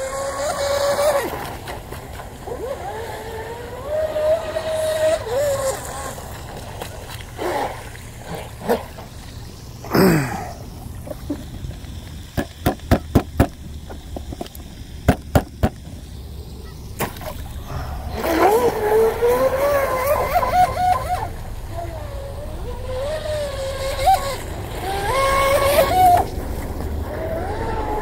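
RC boat's 4000 kV brushless electric motor running out on the water, its whine rising and falling in pitch with the throttle. A run of sharp clicks comes near the middle.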